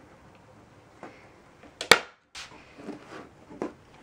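Manual staple gun firing a staple through upholstery fabric into the wooden frame, a single sharp snap about two seconds in, with a few fainter clicks and knocks of handling around it.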